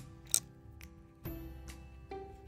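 Soft background music, with one sharp metallic click about a third of a second in as pliers squeeze a small metal jump ring shut on a keychain.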